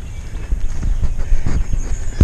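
Footsteps of a person walking on a grassy trail, a few soft thuds over an uneven low rumble of handling noise from a body-worn camera.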